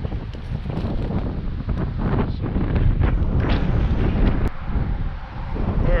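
Wind buffeting the microphone: a loud, uneven, gusty rumble with a few brief knocks.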